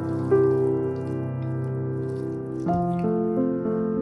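Slow background piano music with held chords that change shortly after the start and again near the end, over faint wet squishing of a wooden spatula stirring grated raw potato in a bowl.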